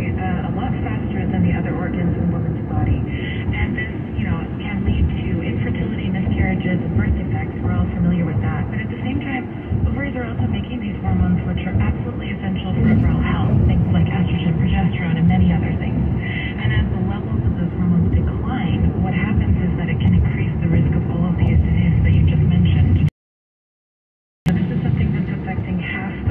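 Road and engine noise inside a moving car's cabin, with muffled talk from the car radio over it. The sound cuts out completely for about a second near the end.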